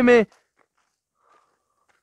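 A man's voice ends just after the start, followed by near silence.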